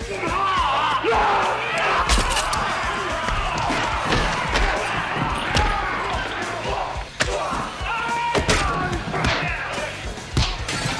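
Bar-brawl movie soundtrack: a crowd of men shouting and yelling over a bar band's music, with a string of sharp punch and crash hits scattered through it.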